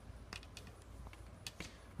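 Quiet room tone with a low steady hum and a few faint, scattered clicks.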